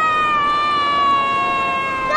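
A child screaming, a long high-pitched cry held for the whole stretch and slowly falling in pitch, like a battle yell.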